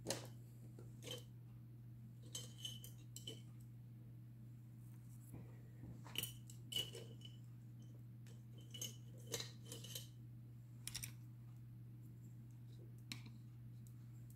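Scattered light clicks and clinks of small hard art supplies being handled on a work table, about a dozen in all, a few with a brief bright ring, over a steady low hum.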